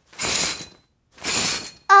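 A changing-room curtain drawn shut and then open again: two short swishes about a second apart.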